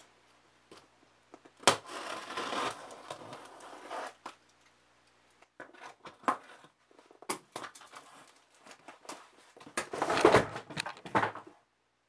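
Cardboard shipping box being torn open by hand: a long ripping sound about two seconds in, then scattered scrapes, crinkles and short tears, with the loudest tearing near the end.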